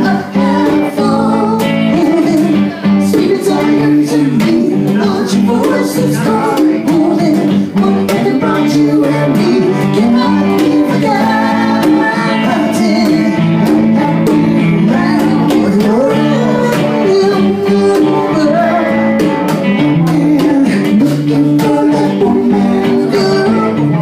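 Live band playing a song: acoustic and electric guitars with a singing voice over them, continuous and loud.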